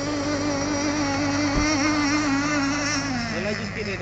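3.5 cc nitro engine of an RC boat running flat out with a steady high-pitched whine; about three seconds in, its pitch falls and wavers.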